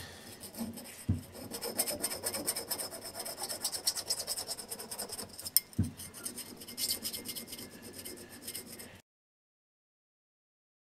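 Small needle file rasping in quick back-and-forth strokes on the hardened filler along the seam between a cast replacement piece and a porcelain vase's rim, bringing the fill down flush with the original surface. Two dull knocks come through, about a second in and near six seconds, and the sound stops abruptly near the end.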